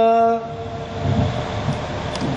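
A male voice singing Sikh kirtan holds a steady sung note that ends about half a second in. For the rest, a rushing, hiss-like noise with no clear pitch follows, until the next line.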